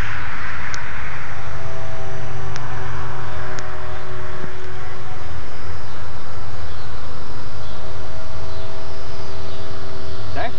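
Scratch-built RC model airplane's motor and propeller droning steadily as it flies overhead, over a loud low rumble. Three short clicks sound in the first four seconds.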